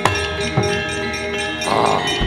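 Javanese gamelan playing, its bronze metallophones and gongs ringing in many long, steady, overlapping tones. A sharp percussive stroke lands at the start and another about half a second in, and a short rattle comes near the end.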